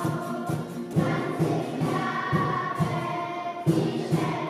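Children's choir singing a song together, with a regular low beat of accompaniment about twice a second underneath.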